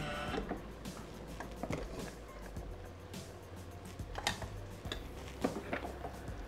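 A few light clicks and knocks as the Thermomix is opened and its steel mixing bowl lifted out, the loudest near the end, over a low steady hum.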